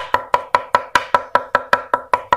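Heavy cleaver chopping raw beef on a thick round wooden chopping block in a fast, even rhythm of about six or seven strikes a second, mincing the meat for larb.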